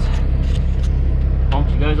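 Heavy truck's diesel engine running with a low, steady rumble, heard from inside the cab during slow maneuvering, with a few faint clicks in the first second.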